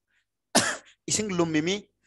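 A man's voice close to a headset microphone: a short throat clear about half a second in, then one spoken word.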